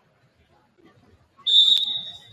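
Referee's whistle blown once, a single steady shrill blast starting about one and a half seconds in and lasting about a second, with a sharp knock partway through it.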